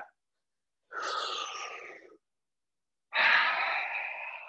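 Two long, audible breaths, one about a second in and a louder, longer one near the end, taken in time with cat-cow spinal movements.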